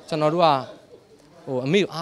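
Speech: a man speaking in short phrases, with a pause of about a second in the middle.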